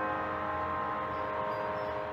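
Background music: a held chord whose notes ring on and slowly die away.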